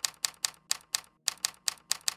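Typewriter keys striking in a quick, slightly uneven run of sharp clicks, about four to five a second, one strike per letter as a title is typed out.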